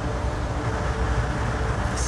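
Wind buffeting the microphone on a ferry's open deck, over a steady low hum from the ship's machinery.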